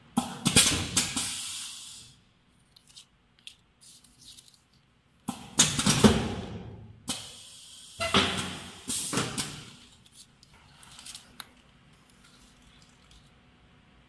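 Foil-laminate gel pouches crinkling as they are picked up, turned over and set down on a digital scale: three bursts of crinkling with light clicks and taps between them.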